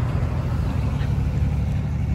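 Wind buffeting a phone's microphone: a steady, uneven low rumble.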